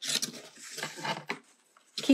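Paper rubbing and rustling against the tabletop as a small watercolor painting is handled and turned, with a few light taps, dying away about a second and a half in.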